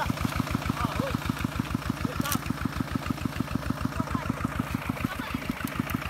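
Single-cylinder diesel engine of a two-wheel walking tractor running with a steady, rapid beat while the tractor is bogged in deep paddy mud, its cage wheels spinning. A single sharp click comes about two seconds in.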